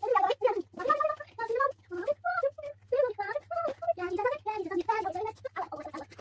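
A young child chattering and babbling in quick, high-pitched bursts of voice, with no clear words.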